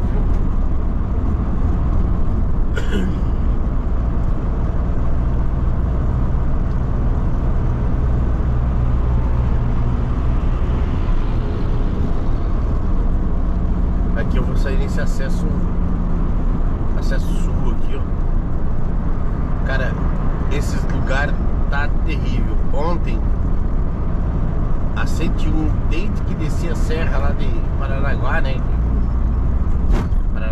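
Steady low drone of a Mercedes-Benz Sprinter van's diesel engine and road noise, heard from inside the cab while cruising at highway speed. Short stretches of an indistinct voice come and go over it.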